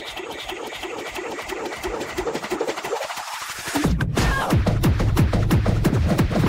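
Gabba/hardcore electronic dance track: a build-up of a repeating synth figure under rising hiss, slowly getting louder, then about four seconds in a heavy, fast kick drum and bass drop in.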